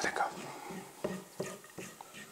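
A spatula stirring almond flakes being dry-toasted in a frying pan, giving a few short, faint scrapes and taps against the pan.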